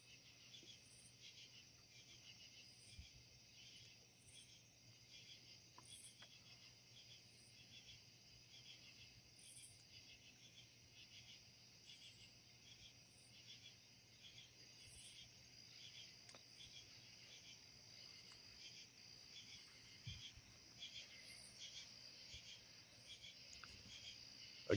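Near silence with a faint, steady chorus of crickets and other night insects, a continuous high pulsing trill.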